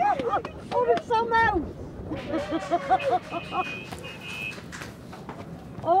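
Indistinct voices of people talking at a distance outdoors, heard through a field microphone. A brief high-pitched steady beep, broken once, sounds a little after the middle.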